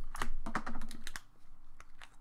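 Snap-on plastic lid being pried off a Play-Doh tub: a quick run of plastic clicks and crackles over about the first second, then a single click near the end.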